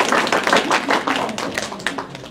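Small audience applauding, the individual claps distinct, thinning out and dying away near the end.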